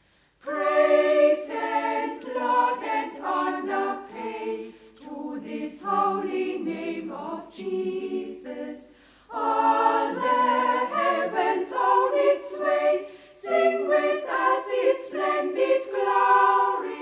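A choir singing a hymn unaccompanied. It comes in about half a second in and breaks briefly between phrases around nine seconds in.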